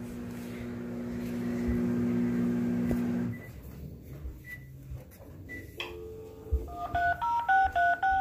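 A steady low hum that cuts off about three seconds in. Near the end comes a click, then a cordless phone's keypad tones as a number is dialed: a quick run of short two-note beeps, one per key.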